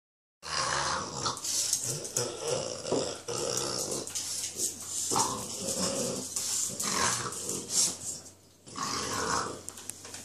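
French bulldogs growling as they play-fight over a toy ball, in a near-continuous run of growls with a short break about eight and a half seconds in.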